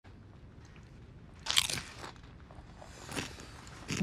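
Crunchy PopCorners corn chips being bitten and chewed: a loud cluster of crunches about one and a half seconds in, then single quieter crunches near two and three seconds.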